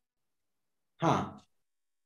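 A person's single short sigh about a second in, a breathy exhale that fades within half a second, with dead silence around it from the call's noise gate.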